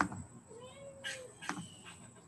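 A house cat meows once, a single call of nearly a second that rises and falls in pitch. A sharp click comes just before it and another just after, matching a computer mouse clicking.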